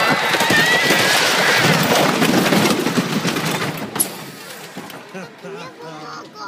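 Roller coaster ride noise: the train clatters rapidly along the track under a loud rushing noise, with a child's high screams at the start. A sharp click comes about four seconds in, and the noise drops off markedly as the train slows.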